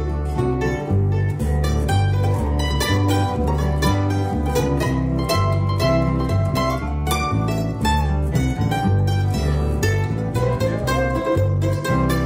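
Mandolin, acoustic guitar and bass guitar playing together in a steady country rhythm, an instrumental passage with no singing. A walking bass line moves under the strummed guitar and plucked mandolin notes.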